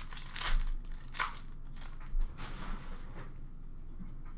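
Hockey card pack wrapper being torn open and crinkled by hand: a few short rustles about half a second in, a second in, and around two to three seconds in, then quieter handling.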